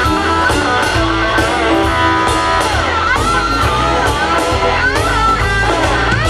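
Live blues band playing, led by a Stratocaster-style electric guitar soloing with bent, gliding notes over bass and a steady drum beat.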